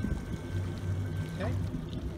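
Yamaha 150 outboard idling quietly with a steady low hum, water splashing at the stern, while its power trim and tilt lowers the motor with a thin steady whine that stops about three-quarters of the way through.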